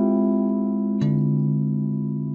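Clean electric guitar playing a D half-diminished chord voicing that rings out steadily; about a second in a lower bass note is plucked and sounds under it, and the chord slowly fades.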